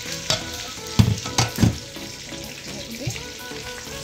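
Chicken pieces sizzling in a stainless steel electric skillet, frying in their own fat with no oil added, with a few sharp clatters of kitchen utensils against the pan about a second in.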